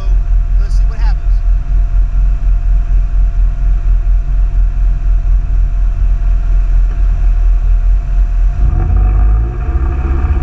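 Off-road vehicle engine idling with a steady, pulsing low rumble and a faint steady whine, rising in level near the end as it revs. A short shout about a second in.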